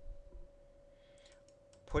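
A few faint computer mouse clicks over a faint steady electrical hum, with a man's voice starting near the end.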